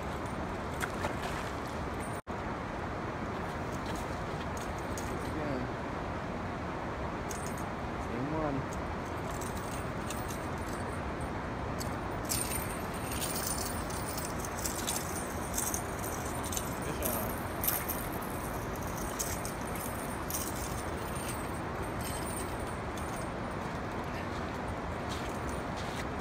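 A steady rushing background noise, with light metallic clinks and rattles of fishing tackle being handled, bunched between about twelve and eighteen seconds in.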